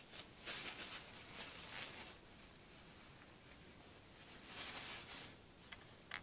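Soft rustling of fingers handling the cut, leathery flap of a ball python eggshell, in two stretches: one from just after the start to about two seconds, and a shorter one near the end, with a couple of small clicks.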